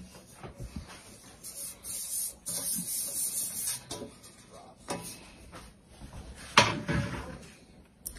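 Kitchen handling sounds: bread cubes being scraped and brushed off a wooden cutting board into an enamel bowl, with scattered light clicks and one sharp knock about two-thirds of the way through as something is set down.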